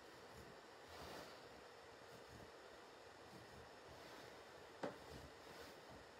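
Near silence: faint room tone, broken by one short sharp click about five seconds in.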